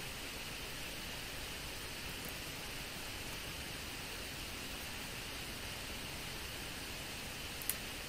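Steady hiss of a microphone's noise floor, with one faint click near the end.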